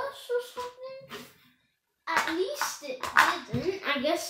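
A boy's voice exclaiming and vocalising without clear words, with scattered clicks mixed in. The sound drops out completely for about half a second just before the middle.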